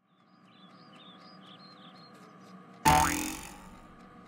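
A cartoon spring 'boing' sound effect as a jack-in-the-box-style toy springs out of a gift box. It comes in suddenly and loud about three seconds in, drops in pitch and dies away within about half a second. Before it there is only a faint outdoor ambience with light chirps.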